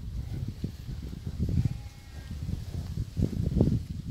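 Dairy cows crowding right up against the phone at a wire fence, heard as a low, uneven rumble of their breathing and movement close to the microphone.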